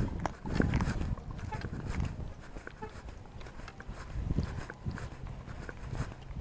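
Footsteps on pavement and clothing rubbing against a chest-worn body camera as the wearer walks: scattered clicks and knocks with a few low thumps, busier in the first two seconds.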